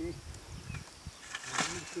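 A man saying a few words at the start and end, with a short burst of rustling noise about one and a half seconds in and a couple of faint high chirps.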